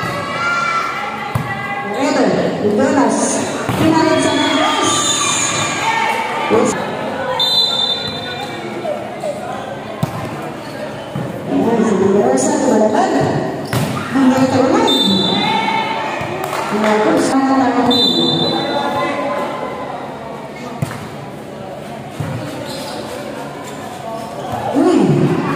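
Players and spectators shouting and calling out in a large, echoing gymnasium, with sharp slaps and thuds of a volleyball being struck at intervals during a rally.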